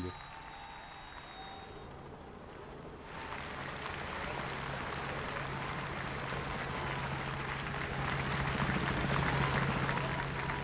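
Large outdoor crowd applauding. The clapping starts about three seconds in and swells steadily louder, over a low steady hum.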